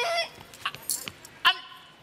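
A woman's high, whining voice in comic pleading: a few short whimpering sounds, then a drawn-out, whined "anh" near the end.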